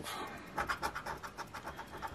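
A penny scratching the coating off a paper lottery scratch-off ticket in quick, short strokes.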